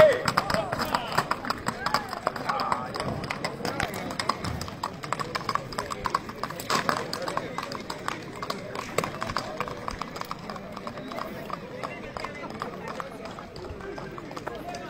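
Horse hooves clip-clopping on asphalt as a horse-drawn wagon passes and moves away, heard among people's voices. A loud call rings out right at the start.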